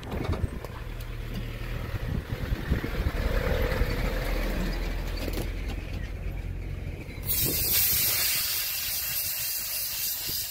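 Low engine rumble of an open game-drive vehicle standing or creeping along. About seven seconds in, a loud steady hiss sets in and becomes the loudest sound.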